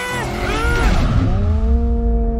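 Cartoon car engine sound effect as a small car speeds up a ramp and leaps off it, with a heavy low rumble from about a second in. A long, steady held tone sounds over it.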